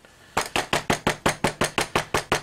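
Rapid, even tapping of an inking tool dabbing Marvy dye ink onto a rubber stamp, about seven or eight light taps a second, starting about half a second in.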